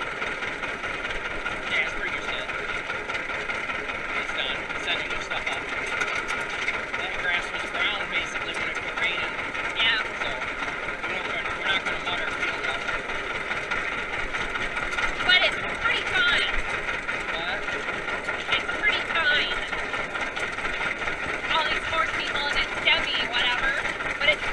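Old John Deere tractor running steadily under way, with wavering higher sounds over it.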